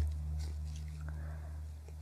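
Faint crinkling and squishing of a plastic piping bag as buttercream is squeezed out through a star tip, a few small soft ticks over a steady low hum.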